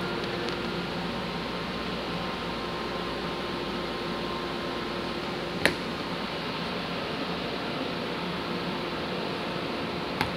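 Steady mechanical room hum with a couple of faint steady tones running under it. About halfway through comes a single sharp click of a small laser-cut wooden piece against the wooden tray.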